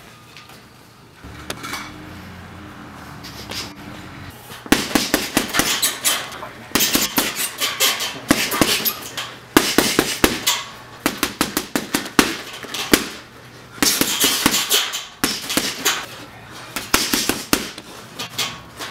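Gloved punches hitting a heavy bag in fast flurries of sharp smacks, starting about five seconds in, with short pauses between combinations.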